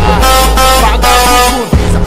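Brazilian funk track: a deep bass note held for about a second and a half under steady high tones, which cut off briefly before the beat comes back near the end.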